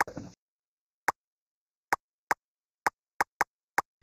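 A series of eight sharp, short clicks at uneven intervals, bunched closer together near the end, the first followed by a brief rustle. They are small button or key clicks made while working the software.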